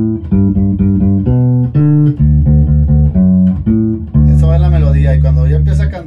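Electric bass guitar playing a cumbia pattern on triad notes: short plucked notes in a quick, even rhythm moving between chords. About four seconds in it settles on one long held low note.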